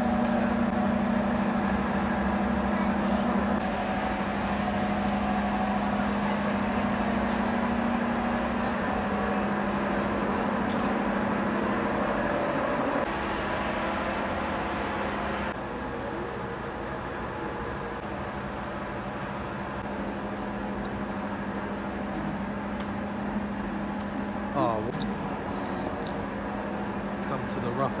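Steady low mechanical hum of a ventilation fan inside a tropical glasshouse, dropping a step in loudness about halfway through.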